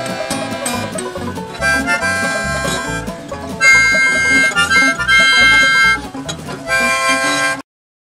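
Harmonica playing long held chords over a strummed acoustic guitar, growing louder about halfway through; the music cuts off suddenly near the end.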